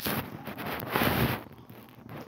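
Rushing, wind-like noise on the phone's microphone in two swells, the stronger about a second in, as the phone is handled and swung around.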